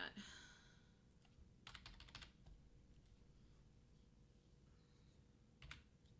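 Faint computer keyboard clicks: a quick run of several keystrokes about two seconds in and another short burst near the end, with near silence between.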